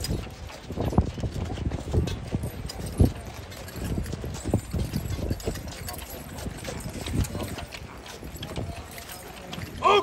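Cavalry horses' hooves stepping and shuffling on gravel: irregular knocks and thuds, the sharpest about a second and about three seconds in.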